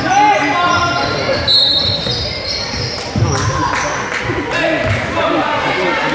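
A basketball dribbling on a hardwood gym floor, with dull thuds repeating every second or so in the second half. Spectators' voices carry through the echoing gymnasium.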